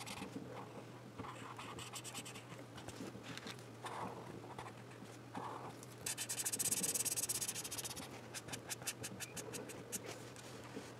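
Felt-tip magic marker scratching across coloring-book paper in short coloring strokes. About six seconds in come two seconds of louder, rapid back-and-forth scribbling, then a run of quick, short strokes.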